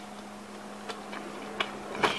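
A few faint clicks from a carpenter's brace as its four-jaw chuck is worked by hand around a quarter-inch twist drill bit, over a steady low hum.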